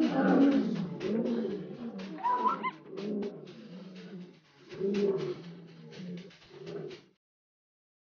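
An animal calling: a run of low, pitched calls, one after another, with a brief rising whistle about two and a half seconds in. The sound cuts off suddenly about seven seconds in.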